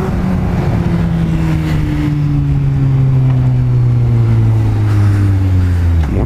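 Honda Hornet motorcycle engine running off the throttle, its note falling slowly and steadily as the bike slows.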